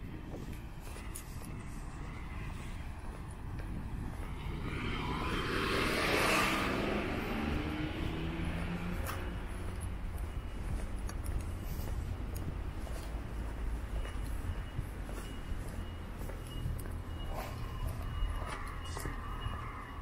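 A car passing on the road beside the pavement: its tyre and engine noise swells to a peak about six seconds in, then the engine note falls in pitch as it moves away, leaving a steady low traffic rumble.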